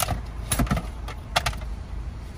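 A few short sharp clicks and rattles of hard plastic and metal parts being handled at a car door's side-mirror mounting, over a steady low rumble.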